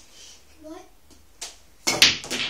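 A light click from the pool table, then, near the end, a louder, sharp clack of pool balls striking one another.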